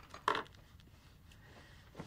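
A brief clink of dishware about a quarter second in, then quiet room tone.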